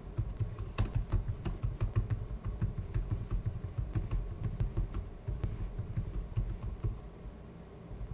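Typing on a computer keyboard: a run of quick, irregular keystroke clicks from about a second in, stopping shortly before the end.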